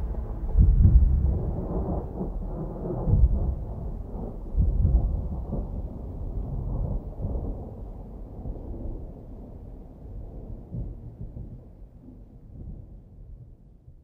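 Thunder: three loud rolls in the first five seconds, then a rumble that slowly dies away toward the end.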